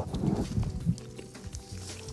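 Irregular soft clicks and crackles, thickest in the first second, of a freshly peeled mandarin being handled and bitten into, over quiet background music.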